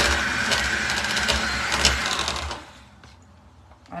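Handheld electric mixer running with its beaters whipping cream for chantilly in a plastic jug, a steady motor whine with a few sharp clicks; it is switched off about two and a half seconds in. The cream is not yet firm enough.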